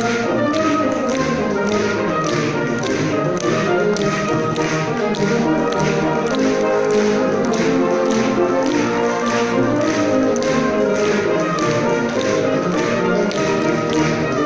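Brass band playing live, sustained chords and lines over a steady, quick tapping percussion beat.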